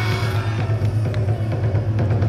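Festival dance music played through the sound truck's loudspeakers, in a pause of the melody: a steady deep bass drone with a few faint clicks.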